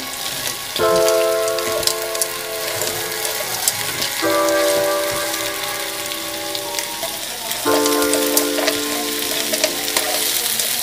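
Mussels in their shells sizzling as they are sautéed in a wok, with scattered clicks of shells and the spatula against the pan as they are stirred. Sustained background music chords change every few seconds underneath.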